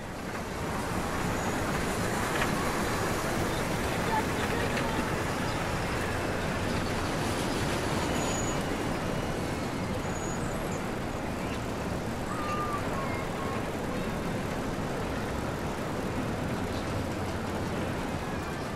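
Steady, even rushing background noise of the road-traffic kind, with a few faint brief tones over it and no clear speech.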